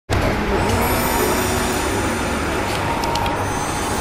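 Steady rumble of road traffic and vehicle engines beside a street, with a few light clicks about three seconds in.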